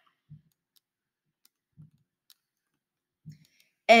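Three soft computer mouse clicks about a second and a half apart, with near silence between them.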